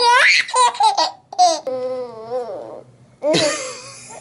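Baby laughing: short high squeals with a rising squeal at the start, a long wavering vocal in the middle, and a breathy burst of laughter near the end.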